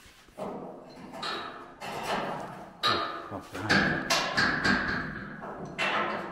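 Men's voices talking, too indistinct for the words to be made out, with a few short knocks among them.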